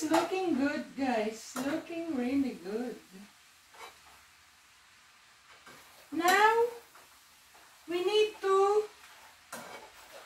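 A woman's voice in short wordless vocal phrases with a sliding pitch: one longer run over the first three seconds, then two shorter ones about six and eight seconds in.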